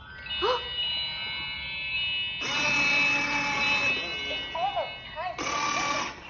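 A pink princess battery-powered ride-on quad plays an electronic tune from its speaker after its button is pushed. About two seconds in its electric drive motor starts whirring as it rolls across the floor, and the whirr comes back near the end.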